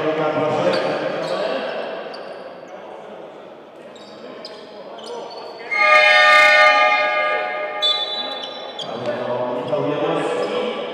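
A basketball arena's buzzer horn sounds once, a single held tone lasting about two seconds from roughly six seconds in, during a stoppage in play. Hall noise and players' voices can be heard before and after it.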